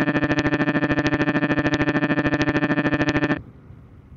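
Bluetooth audio glitch from a Fodsports FX8 Air helmet intercom feeding a GoPro Hero 12: a stuck, looping fragment of the voice turns into a steady robotic buzz pulsing about eighteen times a second. It cuts off abruptly about three seconds in, leaving a faint hiss. It is a dropout of the wireless audio link.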